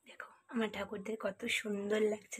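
A woman's voice speaking in short phrases, starting about half a second in.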